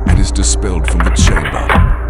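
Cinematic soundtrack music over a steady low drone, layered with sharp metallic clicks and clacks of a pistol's slide cycling as a spent casing is ejected.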